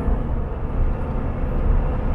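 Steady road and engine rumble heard from inside a moving vehicle's cabin, even and unbroken.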